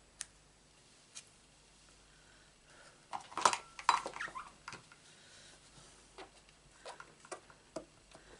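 Light clicks and knocks of a stamp on its clear block being pressed, lifted off the card and set down on the craft mat, busiest about three and a half seconds in, with a soft rustle of paper.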